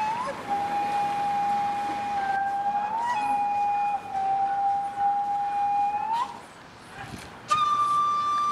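Background music: a solo flute holding long, steady notes, each ending with a small upward slide in pitch. It drops away for about a second near the end, then comes back on a higher held note.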